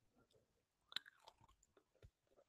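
Near silence: room tone, with a faint short click about a second in and a few softer ticks.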